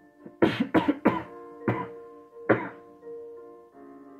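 A man coughs five times, three in quick succession and then two more spaced out, over the soft piano intro of a karaoke backing track.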